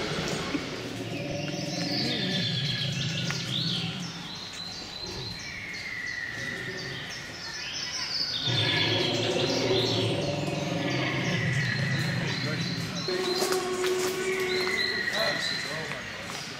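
Wild birds singing in woodland: many repeated chirps and several descending whistles, over a low background of people's voices.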